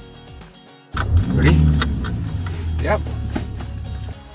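Mini Countryman Cooper S engine starting about a second in, its revs flaring briefly, then settling into a steady idle.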